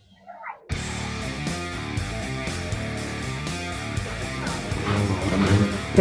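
Background music led by guitar, starting abruptly just under a second in after a brief quiet moment, then playing steadily.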